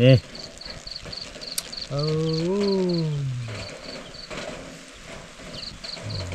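An insect chirping in short, high-pitched pulses, about five a second, stopping just past the middle and starting again near the end. Over it, a man's voice gives a short word at the start and a long drawn-out 'eh' from about two seconds in.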